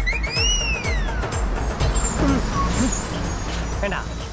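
Busy bus stand: a steady low bus-engine rumble under general crowd noise, with a whistle-like tone that glides up and then falls away over the first second and a half.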